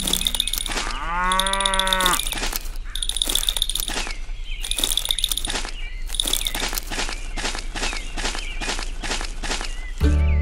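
Added sound effects: a single moo-like call lasting about a second, starting about a second in, then a run of quick pops and clicks with recurring bright, chiming bursts.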